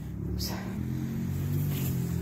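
Motor vehicle engine running close by: a steady low hum with a few held tones that sets in about half a second in and grows slightly louder.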